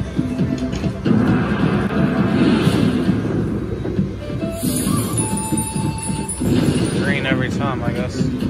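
Video slot machine playing its bonus free-spin music and reel sound effects over casino crowd chatter, with a quick rising run of tones near the end.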